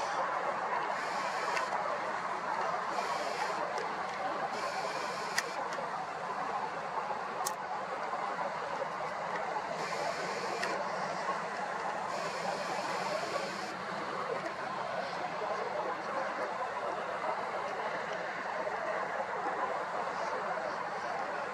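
Steady outdoor city background hum, like distant traffic, with a few short, faint higher-pitched whirs and a couple of small clicks.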